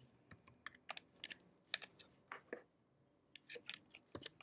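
Computer keyboard typing: irregular runs of key clicks, with a short pause just under three seconds in.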